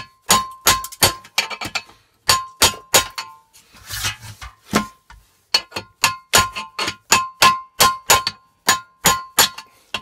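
Hammer blows on a chisel driven against the iron collar of an old copper hot-water cylinder: a run of sharp metallic strikes with a short ring, about two to three a second. There is a pause of about a second partway through, then steady blows.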